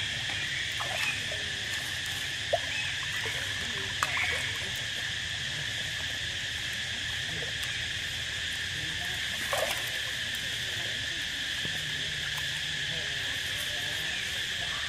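Steady, high insect chorus droning without a break, with a few short sharp sounds over it around a third of the way in and again past the middle.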